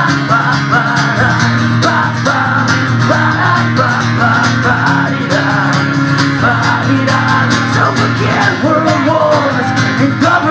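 Acoustic guitar strummed steadily in a live solo performance, with a man singing over it.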